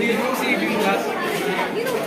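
Indistinct chatter of several young men's voices talking over one another.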